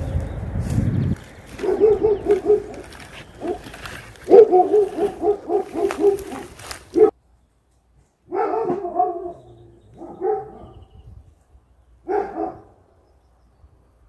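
A dog barking in several runs of quick barks, with pauses between the runs.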